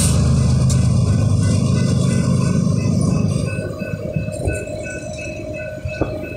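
Four BNSF diesel locomotives working hard under load as they pull a loaded rock train away up a grade, a deep engine rumble that fades after about three seconds as they move off, leaving the hopper cars rolling on the rails. A grade-crossing bell dings steadily and faintly throughout.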